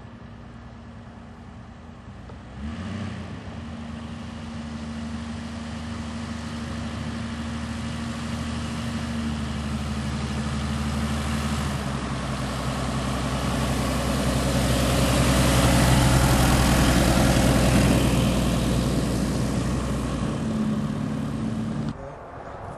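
Zenith Zodiac 601XL light aircraft taxiing after landing, its piston engine and propeller running steadily at low power. It grows louder as the plane comes closer, and the lowest tones stop shortly before the end.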